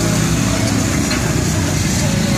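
A nearby vehicle engine idling on the street: a steady, continuous low drone.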